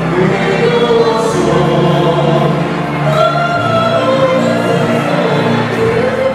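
Live singers performing a romantic ballad through a microphone and PA, holding long sustained notes over instrumental accompaniment.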